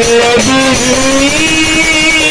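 Live Baul folk music led by a harmonium, with sustained melody notes that step up and down in pitch and a wavering high tone entering about a second and a half in.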